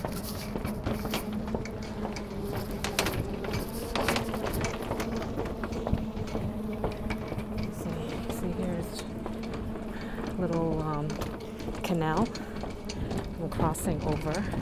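A steady low mechanical hum, with brief snatches of people's voices about ten and twelve seconds in and a few sharp clicks, typical of walking across a footbridge among other pedestrians.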